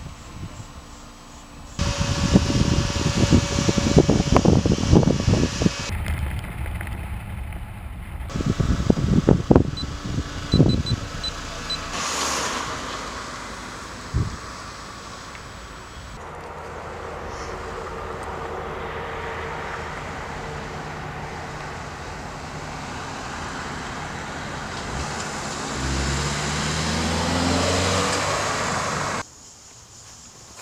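Car sounds cut together from several shots: cars rolling past with a loud, uneven rumble, then a steady engine and road hum. Near the end an engine accelerates, rising in pitch, before the sound cuts off.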